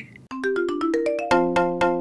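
Short electronic jingle from a phone app: a quick rising run of notes that builds into a held chord, struck about three times. It is the app's reward chime for finishing a practice conversation.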